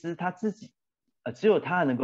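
A man speaking, with a short pause about halfway through.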